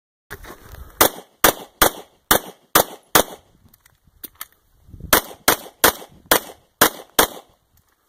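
Semi-automatic pistol fired in two strings of six rapid shots, roughly two or three a second, with a pause of about two seconds between them during a magazine change, where a couple of faint clicks are heard.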